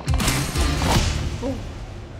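Background music with a heavy bass beat and sharp hits, breaking off about a second in; a short vocal sound follows.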